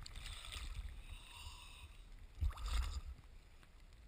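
Choppy seawater sloshing and splashing against a camera at the water's surface, over a low rumble. A louder surge of water comes about two and a half seconds in, then the sound fades away.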